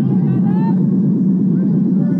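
Stadium crowd ambience: a steady low rumble of crowd noise with indistinct voices rising and falling over it.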